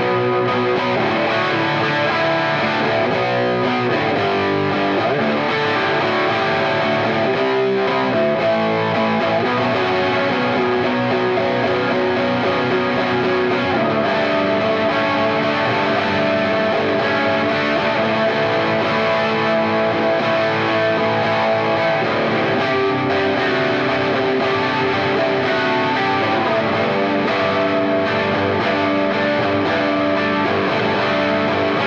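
Yamaha Revstar RS720BX electric guitar with Alnico V humbuckers, played through an overdriven tone: sustained chords and notes that keep changing pitch.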